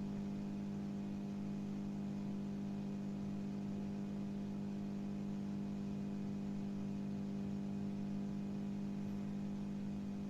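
Steady electrical mains hum, a constant low buzz that does not change.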